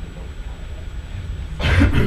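A man clearing his throat once, a short rasping burst near the end, over a low steady room hum.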